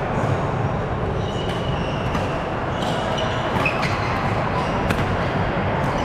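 Busy badminton hall: a steady din of voices and play from other courts, with scattered sharp racket-on-shuttlecock hits and a few short, high squeaks of court shoes on the wooden floor.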